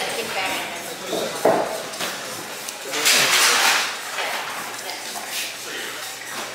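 Indistinct voices in the background, with a sharp knock about a second and a half in and a louder burst of hissing noise around three seconds in.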